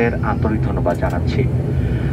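Steady low drone of a turboprop airliner's engines and propellers heard inside the cabin while it taxis after landing, with voices over it.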